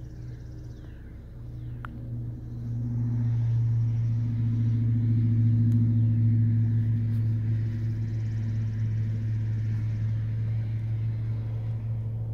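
Steady low drone of a car's engine and road noise heard from inside the cabin while driving, growing louder about three seconds in as the car picks up speed, then holding even.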